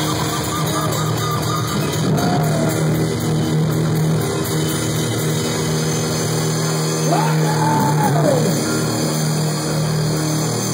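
Live electric bass solo through a loud amplifier, holding a low sustained note, with the drum kit playing along. A voice yells over it twice, a short call about two seconds in and a longer one that rises and falls about seven seconds in.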